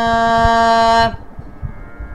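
A Carnatic voice holding one long steady sung note in a swara passage of raga Todi, heard over a video call. The note cuts off about a second in.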